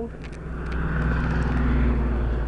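A car driving past on the street, its engine and tyre noise growing steadily louder as it approaches.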